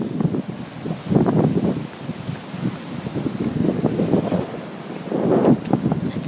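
Wind buffeting the microphone in gusts, with a low rumble that swells about a second in and again near the end.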